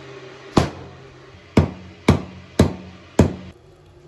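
Firewood being split into kindling at a wood stove: five sharp wooden knocks, spaced about half a second to a second apart, over faint background music.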